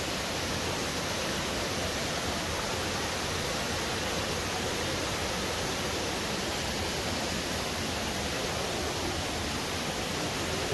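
Steady rush of creek water running over shallow rapids and a small waterfall.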